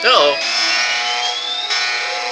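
A steady electronic drone with a thin whine rising slowly in pitch, after a short swooping sound at the start.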